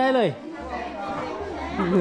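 Speech: a voice at the very start, then quieter chatter, with talking louder again near the end.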